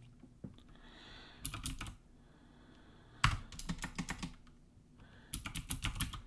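Computer keyboard typing in several short bursts of keystrokes with brief pauses between them.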